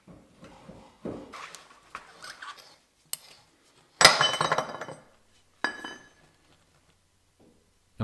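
Chrome knock-off hub nut being fitted to a wire wheel: soft scuffs and light clinks, then a sharp metallic clank with a ringing tail about four seconds in, and a smaller ringing clink a second and a half later.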